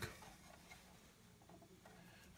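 Near silence: room tone with a few faint ticks from wires being handled at a burner control's terminal strip.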